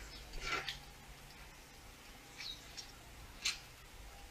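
A few faint, scattered rustles and clicks of handling, with a faint low hum during the first two seconds.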